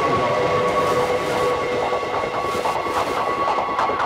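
A recorded train sound sampled into a techno track: a rumbling rail noise with steady whining tones held over it. Short rhythmic percussion ticks come in over it from about halfway through.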